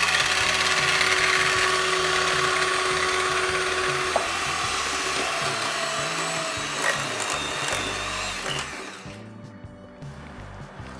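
Electric hand mixer running, its beaters whisking chocolate cake batter in a steel bowl: a steady motor whine that switches off about nine seconds in.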